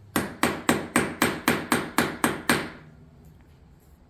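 Someone knocking on a door: about ten quick, even raps at roughly four a second, stopping about two and a half seconds in.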